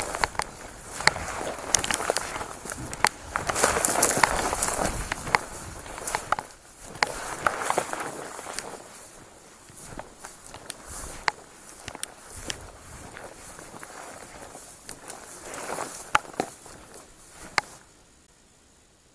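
Footsteps forcing a way through dense dry grass and bare brush: stems and branches rustling and scraping against clothing, with frequent sharp snaps of twigs. Loudest in the first half, quieter toward the end.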